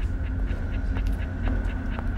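Low, steady rumbling drone of a suspense film score, with a faint high held tone and faint regular ticking over it.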